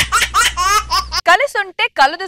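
A laughter sound effect: a quick run of short, high-pitched 'ha-ha' bursts, about four or five a second.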